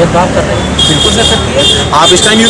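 Outdoor road traffic rumble under background voices, with a steady high-pitched tone starting about a second in.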